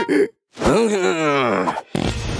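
A cartoon character's wordless vocalisation: a sigh-like groan that falls steadily in pitch for about a second, after a brief silence. A burst of noise starts just at the end.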